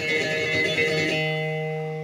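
Electric bass guitar played fingerstyle in a Spanish-style arpeggio pattern. About a second in, the last chord is left ringing and slowly fades.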